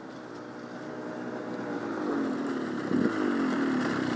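Off-road dirt bike engine approaching up a gravel climb, growing steadily louder, its pitch falling and rising as the rider works the throttle.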